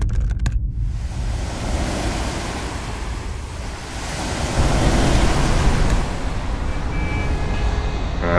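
Ocean surf washing onto a beach: a steady rush that swells louder about halfway through.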